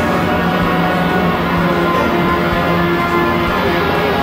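Music with long held notes, steady and loud throughout.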